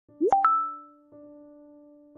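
A quick rising pop sound effect, two pops in a fraction of a second, followed about a second in by a soft held chord of intro music that repeats about once a second.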